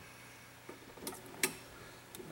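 Homemade coil winder with magnet wire: a few faint light clicks, then one sharper click about a second and a half in, as the wire is guided onto the turning coil former.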